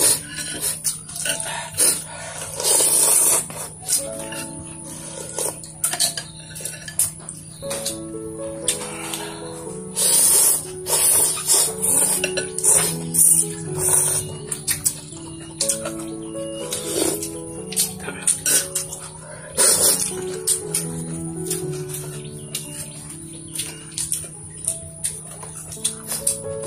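Background music with a simple stepping melody. Over it come loud, short bursts of noodle-soup slurping and eating noises every few seconds.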